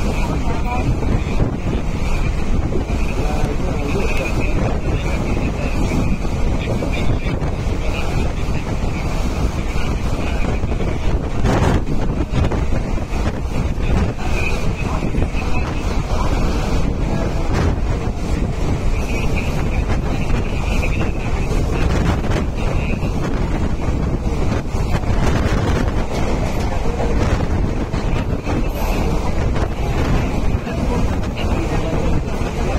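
Wind rushing over the microphone at the open window of a moving EMU suburban electric train, over the train's steady running noise on the track. A wavering high-pitched whine comes and goes through it, with an occasional knock.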